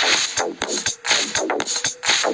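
Two beat-matched electronic dance tracks at 122 BPM playing together from a DJ mixing app, the second track being faded up to full volume. A steady beat at about two strokes a second, with repeated falling sweeps over it.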